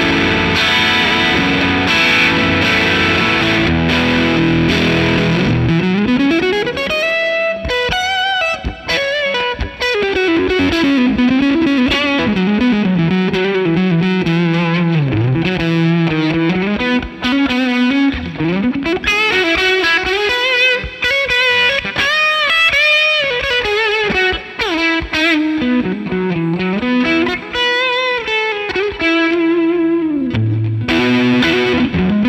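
Electric guitar (Fender Stratocaster) played through a Benson Preamp overdrive pedal with its knobs cranked, into a Fender '65 Twin Reverb amp. It gives an overdriven tone, with held chords for the first several seconds, then single-note lead lines full of string bends and slides.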